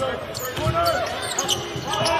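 A basketball being dribbled on a hardwood arena court during live play, in short repeated thumps, with voices on the court and in the stands.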